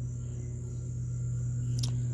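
Crickets trilling steadily over a low, steady hum, with one short click near the end.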